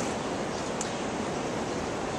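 Steady city street background noise: an even rush with no distinct events, typical of distant traffic.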